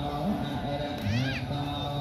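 A steady murmur of low held voices, cut by one short high call that rises and falls, about a second in.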